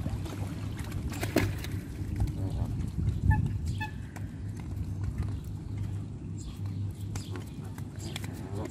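Canada geese pecking bread from a hand, their bills snapping in many quick clicks, with two short goose calls about three seconds in over a steady low hum.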